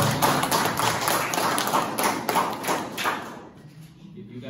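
Audience applauding in a hall, a dense patter of many hands clapping that dies away near the end.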